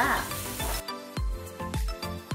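Chicken and aromatics sizzling in a wok, cut off abruptly under a second in. Background music with a steady beat follows.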